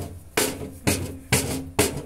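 Hammering from roof repair work: four sharp blows, about two a second, each ringing briefly.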